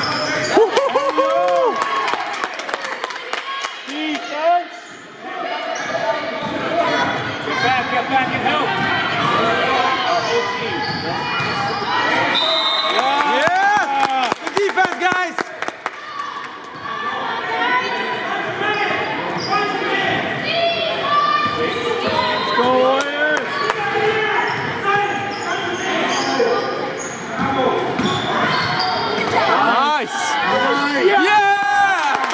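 A basketball bouncing on a hardwood gym floor in repeated sharp knocks during play, with voices of players and spectators echoing in the large hall.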